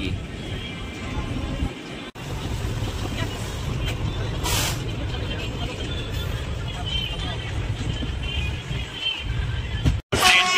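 Passenger train running, heard from on board: a steady low rumble with rushing wind noise, a short hiss about four and a half seconds in, and a brief dropout just after two seconds.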